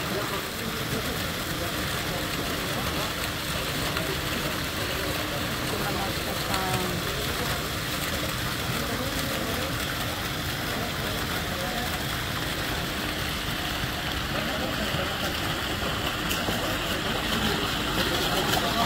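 Steady rushing and splashing of fountain water jets falling into a pool, with a low rumble from wind on the microphone.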